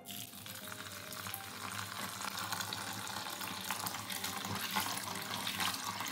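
Kitchen tap running steadily into a plastic bowl of soaked breadfruit seeds in a stainless steel sink, while hands stir and rub the seeds to wash them.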